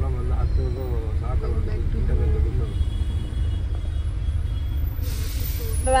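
Steady low rumble of a car moving slowly in heavy traffic, heard from inside the cabin, with quiet talk over it. A short hiss comes about five seconds in.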